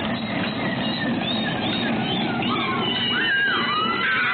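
Young children squealing and calling out in high voices as they play, over a steady low rumble.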